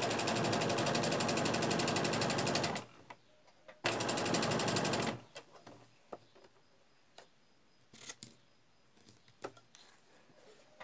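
Domestic electric sewing machine stitching in two runs, the first about three seconds long, the second stopping about five seconds in, then small clicks and rustles of fabric being handled.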